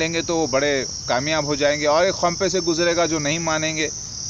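A man talking in Urdu over a steady, high-pitched, unbroken drone of insects.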